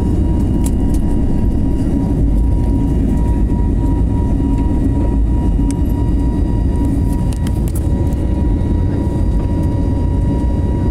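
An airliner's jet engines, heard from inside the cabin at takeoff power as the plane lifts off and climbs: a loud, steady low rumble with a thin, steady whine above it.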